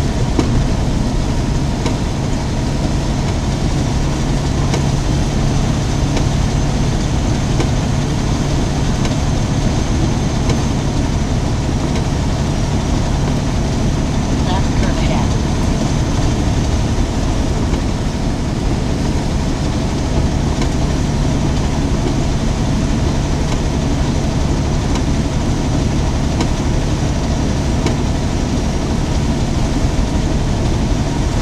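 Steady in-cab noise of a truck driving on a wet highway: a low, even engine drone over the hiss of tyres on the wet road.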